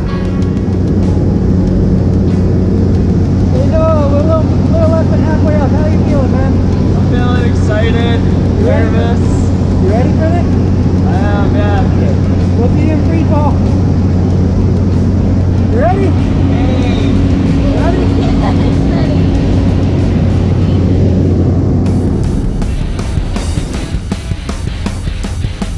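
Jump plane's propeller engine droning steadily, heard from inside the cabin. Voices are half-drowned beneath it.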